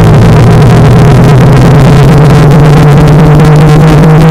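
Loud, heavily distorted synthetic drone clipped at full volume, holding steady low tones with a harsh buzzing haze above them.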